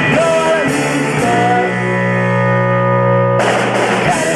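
Live power-pop rock band: electric guitar, drums and sung vocals. After about a second and a half the band holds one sustained chord that rings steadily, then the full band comes back in near the end.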